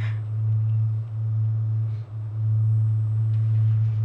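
A steady low-pitched hum that holds one tone throughout, with a brief soft hiss right at the start.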